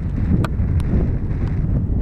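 Wind buffeting the camera's microphone: a loud, steady low rumble, with two faint ticks about half a second and just under a second in.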